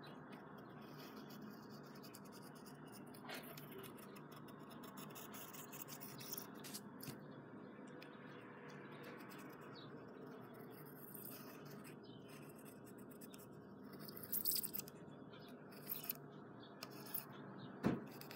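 Pencil sketching on paper: faint scratchy strokes over a low, steady room hum. The strokes come in louder bursts a few seconds before the end.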